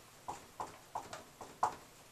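Dry-erase marker writing on a whiteboard: a quick, uneven series of about six short squeaky strokes as letters are written.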